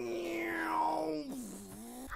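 A long, drawn-out vocal cry held on one pitch for about a second, then dropping lower and fading near the end.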